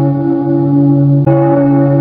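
A deep bell ringing with long, steady tones, struck again a little over a second in.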